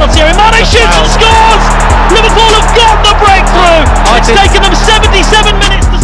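Background music with a steady beat and heavy bass, with a vocal line over it.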